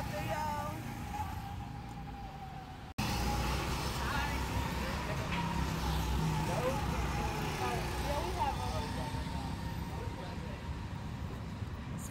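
Go-kart engines running on an outdoor track, a steady low drone with a higher steady whine in the first few seconds, and faint voices mixed in. The sound breaks off and resumes abruptly about three seconds in.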